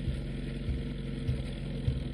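Leopard 2 main battle tank driving, its V12 diesel engine running with a steady low rumble.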